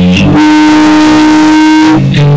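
Live punk rock band playing loud: about half a second in, the beat drops away to a single distorted electric guitar note held steady, ringing over a wash of cymbals.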